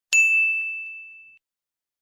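A single bright ding sound effect marking the correct quiz answer: one high tone struck once, fading out over just over a second.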